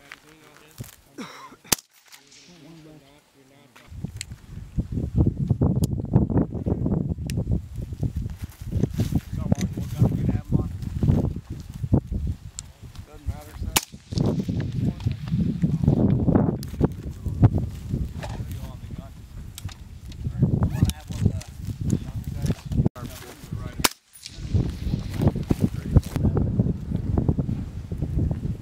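Gunfire on a weapons range: occasional sharp shots, first over near quiet, then over a loud, continuous low rumble from about four seconds in.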